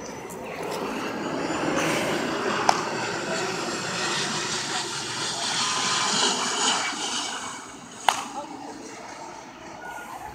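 A passing aircraft's engine noise swells and fades over several seconds. Two sharp cracks of a bat hitting a ball sound, one about two and a half seconds in and a louder one about eight seconds in.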